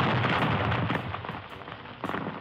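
Explosion sound effect of a gas tank blowing up: a sustained, crackling blast that dies down about a second in.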